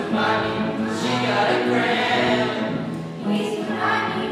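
A group of girls singing together as a choir, holding sustained notes that shift in pitch every half second or so.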